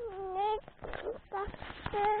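A toddler's high-pitched, drawn-out whiny vocalizations, one at the start and another at the end, with the rubbing and knocking of a small camera being grabbed and handled in between.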